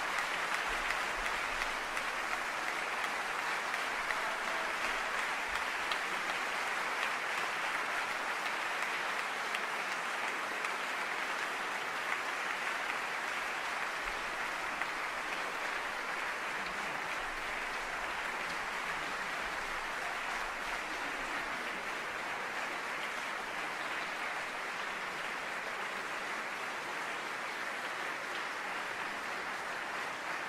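Concert hall audience applauding steadily after a performance, a sustained round of clapping that eases slightly toward the end.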